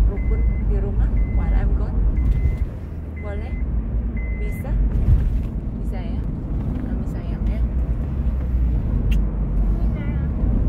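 Steady low rumble of a car cabin, with the car's warning chime beeping about once a second, five short beeps that stop about four and a half seconds in. Quiet voices talk over it.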